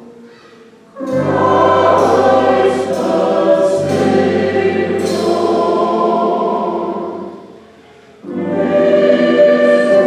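Mixed church choir singing a Christmas anthem with a low bass line under it. It comes in about a second in, fades out a little after seven seconds, and a new phrase starts shortly after.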